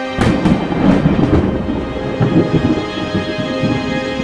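A sharp thunderclap with a few quick crackles, then a low rolling rumble that slowly fades. Steady theme music plays under it.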